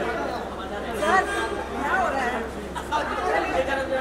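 Indistinct chatter of several people talking over one another, with a low steady hum beneath.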